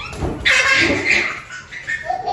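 A one-year-old toddler squealing and laughing, loudest about half a second in.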